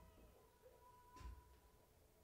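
Near silence: a faint steady hum, with one brief faint sound just over a second in.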